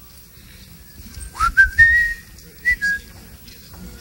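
A person whistling a short phrase: a rising slide into a few held, stepped notes, lasting about a second and a half from just past a second in.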